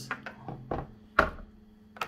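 Handling knocks on a tabletop: a few light taps and one sharper thunk about a second in.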